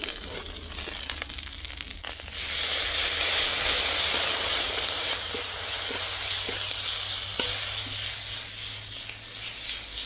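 Green peppers stir-frying in a hot wok: a steady sizzle that swells about two seconds in as soy sauce goes into the pan, then slowly fades, with a few light taps of the steel ladle against the wok.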